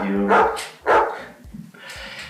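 A small dog, a Jack Russell cross, barking: a few short barks in the first second.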